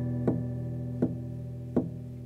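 Epiphone FT-110 Frontier acoustic guitar letting a chord ring and slowly fade, with three light, evenly spaced pick strokes about every three-quarters of a second.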